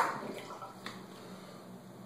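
The last of a poured liquid trickling and dripping through a plastic funnel into a plastic bottle after the pour stops, fading quickly, with a couple of faint clicks.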